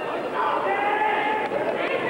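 Wrestling-arena crowd, with individual spectators shouting long, drawn-out calls over the general crowd noise: one held call about half a second in, and another rising call near the end.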